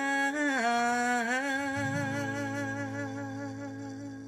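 A woman's voice holding the final sung note of a song with a slight waver in pitch, while an acoustic guitar chord rings under it; a low guitar note comes in about halfway, and both slowly fade toward the end.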